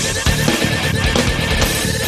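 Nu metal band music with distorted electric guitar and drums, and a high wavering tone held over the top.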